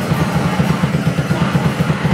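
Raw punk noise band playing live: a very fast drum beat under a dense wall of distorted bass and synthesizer noise.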